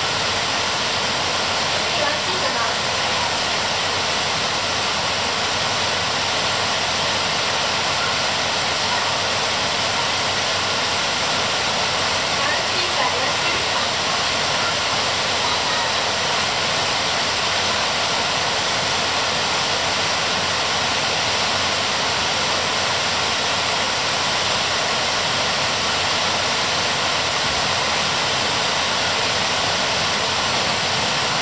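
Heavy rain pouring down on broad, glossy tree leaves: a steady, even hiss.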